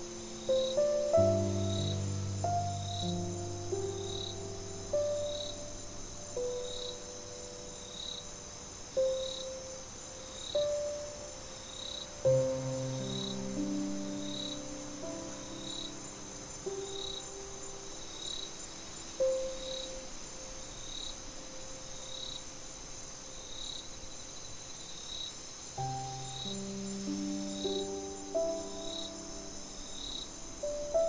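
Slow, soft solo piano playing sparse single notes and chords over a steady high cricket chorus. A single cricket chirp repeats about every second and a quarter.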